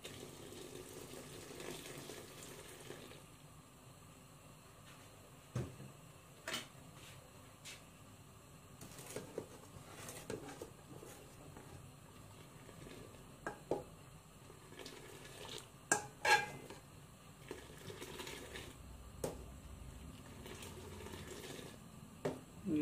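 A steel ladle stirring tea and milk in an aluminium pot, clinking sharply against the metal pot several times at irregular moments, loudest around two-thirds of the way through. At the start, a soft pour of liquid as the brewed tea goes into the milk.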